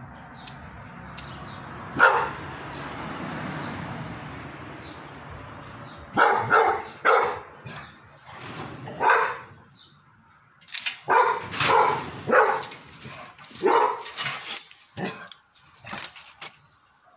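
A dog barking in bouts of several short barks, starting about six seconds in.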